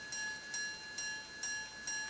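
C.H. Meylan minute-repeater pocket watch striking the hours: its hammers hit the gong in a string of evenly spaced, ringing strikes, a little over two a second.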